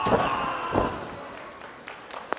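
A wrestler's body slammed down onto the ring mat and a barbed-wire board: a heavy thud right at the start and a second thud under a second later, followed by fading crowd noise.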